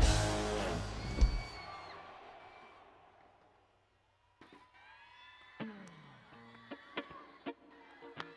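A live rock band ends a song with a final drum-and-cymbal hit about a second in; the electric guitar chord rings out and fades to silence over the next two seconds. In the second half there are only faint, scattered whoops and sharp clicks.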